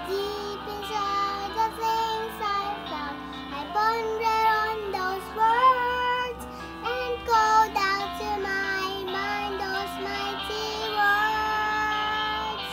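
A young girl singing a praise song solo over a backing track, her voice holding notes and sliding between them, with a long held note near the end.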